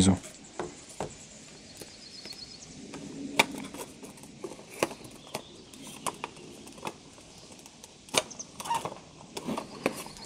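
Clear acrylic panels being handled and fitted into slots: scattered light plastic clicks and taps.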